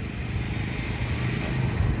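Steady street background noise with a low rumble of traffic, picked up by a handheld microphone.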